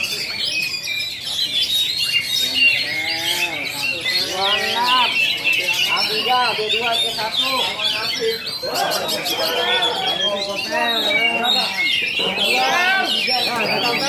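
Several oriental magpie-robins (kacer) singing at once in competition, a dense run of fast chirps and trills. Men's voices call and shout over them, thickest in the second half.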